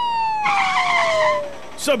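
Cartoon traffic sound effects: a vehicle horn sounding with a steadily falling pitch, and a tyre screech from about half a second in lasting about a second.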